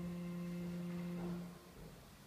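A held chord of steady musical notes that stops about one and a half seconds in, its sound dying away briefly in the church's echo.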